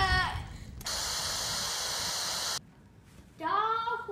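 A steady, even hiss lasting a little under two seconds, starting and stopping abruptly. Shouting fades out at the start, and a child's singing voice begins near the end.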